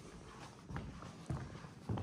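Soft footsteps on a ceramic tile floor, about three steps roughly half a second apart.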